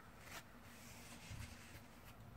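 Near silence: room tone, with faint soft rustles of playing cards being handled.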